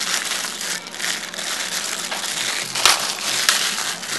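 Clear plastic bag crinkling and crackling as a lens hood is unwrapped by hand, with two sharper clicks near the end.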